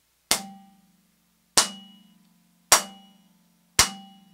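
Four sharp strikes, a little over a second apart, on a vibraphone prepared with a thin wooden strip laid across its aluminium bars. Each gives a dry crack and leaves a low bar tone ringing.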